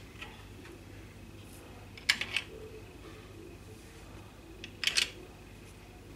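Short plastic clicks from a zigzag pencil magic toy being handled as pencil pieces are set into its plastic panels: a pair about two seconds in and another cluster near the end.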